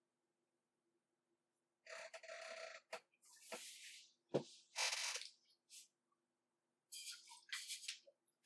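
Faint scattered creaks and rustles, with one sharp click about halfway through, over a faint low hum; the first two seconds are near silent. The things creaking are creaky and can't be moved without noise.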